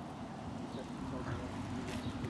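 Quiet outdoor background with a low, steady hum of distant road traffic.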